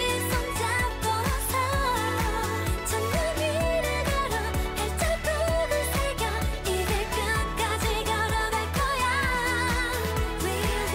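Korean pop song: a singer's voice, with vibrato, sings Korean lyrics over a steady pulsing bass beat and band backing.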